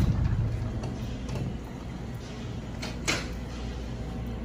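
A door swinging shut with a low thud and rumble, then a single sharp click about three seconds in, over a steady low hum.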